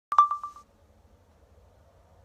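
A short electronic beep: one high tone pulsing about five times and dying away within half a second, then faint low room hum.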